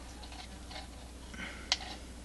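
Small clicks and rustles of wire being handled and pushed onto a car speaker's terminal, with one sharp click near the end.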